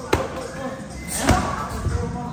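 Muay Thai pad work: two sharp smacks of strikes landing on a trainer's pads, one just after the start and one just past the middle, with voices talking in the background.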